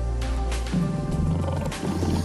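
A lion's roar, played as a sound effect over steady background music.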